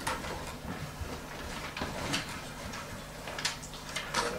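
Meeting-room background between speakers: a few scattered soft knocks and rustles over a steady low hum.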